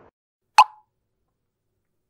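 A single short pop sound effect about half a second in, a sharp onset centred on one mid pitch that dies away quickly; otherwise silence.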